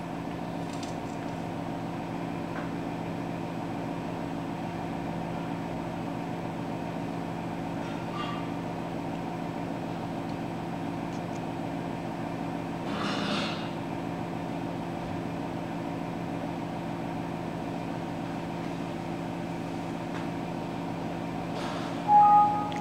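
Steady machine hum made of several steady tones, with a short hiss about thirteen seconds in.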